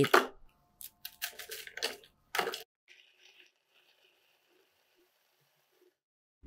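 Chocolate biscuits being dropped and pressed into a plastic chopper bowl: a handful of light clicks and crunches over the first two and a half seconds, the last one the loudest. Near silence follows.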